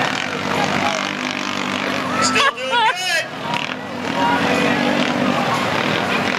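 Several Yamaha Rhino side-by-side engines running as they race around a dirt track, a steady drone, under voices. About two and a half seconds in, a loud wavering, warbling call rises above them for under a second.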